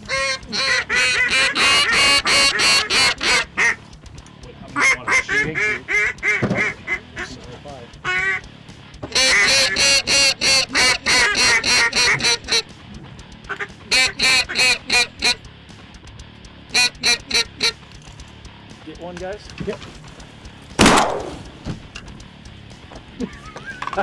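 Goose calling in several bursts of rapid, evenly repeated honks and clucks. Near the end comes a single loud bang.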